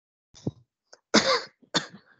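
A person coughing: about three harsh coughs, the loudest about a second in and another half a second after it.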